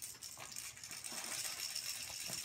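Faint crinkling of wrapping paper with scattered small clicks, and a faint steady high tone from about a quarter of the way in.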